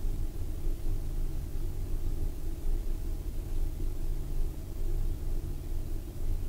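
Steady low background rumble of room tone, with no speech.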